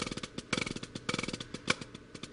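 Drumsticks playing a fast rudiment on a practice pad: a rapid, even stream of strokes with louder accents about every half second.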